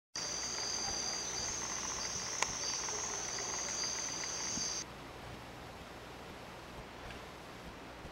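Crickets chirring in a steady high trill with a faint pulsing beneath it, cutting off abruptly a little past halfway and leaving only faint hiss. A single sharp click comes just before the trill's midpoint.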